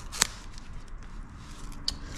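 A small cardboard box with a styrofoam insert being handled and opened, with faint rustling, a sharp click about a quarter second in and a smaller one near the end.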